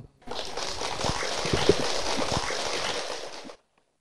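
An audience applauding: dense clapping that starts just after the introduction and cuts off suddenly about three and a half seconds in.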